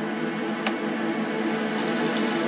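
A steady, sustained droning chord with a single sharp click about two-thirds of a second in.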